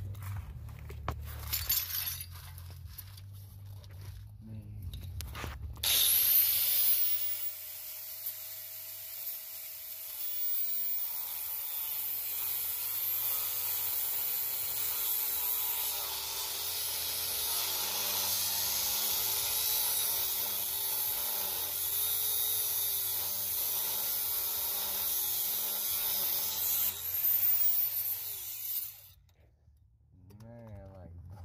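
Abrasive cut-off wheel spinning up about six seconds in, then cutting steadily through a steel sway bar end link whose nut kept binding on its stud. Its pitch dips and recovers as the wheel bites, and it spins down near the end. Before it starts there are a few knocks of tools.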